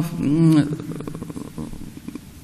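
A woman's voice at a microphone: a drawn-out hesitation sound "uh" that trails off into a low, creaky rasp before a pause near the end.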